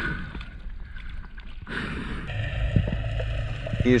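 Water noise picked up by an action camera in the sea: a quiet stretch at the surface, then from a little under halfway a steady, muffled low rumble with faint ticks as the camera goes under.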